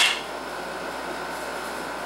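Steady background hiss of an air conditioner, with a faint thin high tone running through it.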